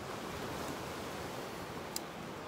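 Ocean surf washing onto a beach, a steady wash of noise, with a brief click near the end.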